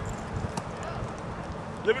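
Soft, irregular thuds of football players' footsteps as they run on grass, over open-air background noise. A man starts talking near the end.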